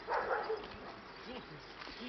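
A dog vocalising: a short loud burst near the start, then a couple of fainter rising-and-falling sounds.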